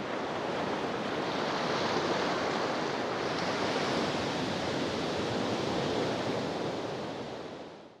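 Ocean surf: a steady rush of breaking waves that fades out near the end.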